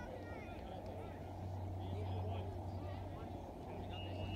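Faint, distant voices of people talking and calling out across the field, over a steady low hum.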